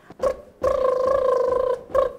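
A woman's voice holding one steady high note for about a second, with short vocal sounds just before and after it: a playful vocal warm-up.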